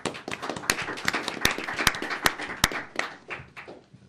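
Audience applauding: many hands clapping in an irregular patter that thins out and fades toward the end.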